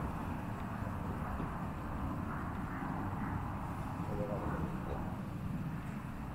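Steady low outdoor rumble with no distinct event.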